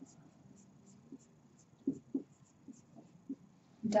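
Marker pen writing on a whiteboard: a string of short, faint squeaks and scratches from the pen strokes, the strongest about two seconds in.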